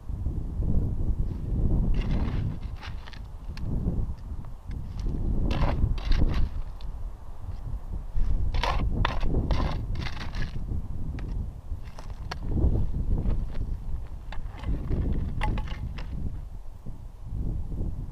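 Clusters of scraping and rattling as stony, pebbly soil is scraped and dug by hand to recover a metal-detector target, over a steady low rumble of wind on the microphone.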